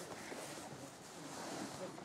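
Indistinct voices of several people talking at a distance, over a steady faint hiss.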